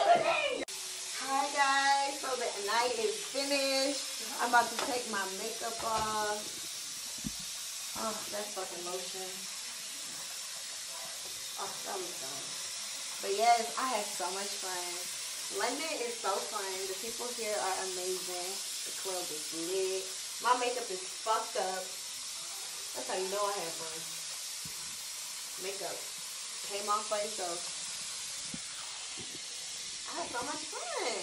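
Indistinct, fairly quiet talking in short phrases over a steady hiss.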